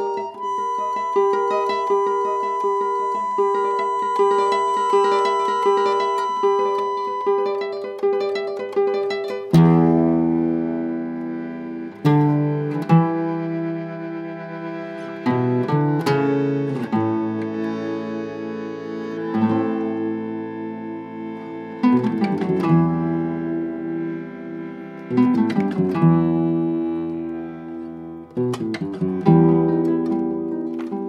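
Instrumental folk piece played by bandoneón, guitarrón and guitar. For the first ten seconds or so a guitar plucks a repeating pattern; then the fuller ensemble comes in, with long held notes over deep plucked bass.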